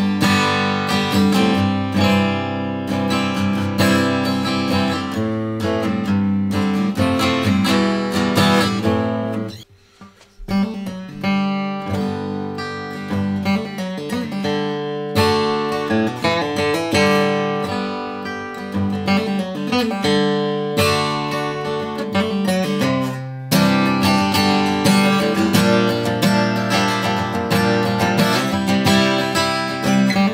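2016 Gibson J-45 acoustic guitar being played, strung with Stringjoy 13–56 balanced-tension strings. The chords ring continuously except for a short break about ten seconds in, after which the playing resumes.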